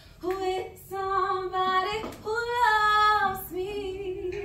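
A woman singing unaccompanied, holding long notes with vibrato, with short breaths between phrases.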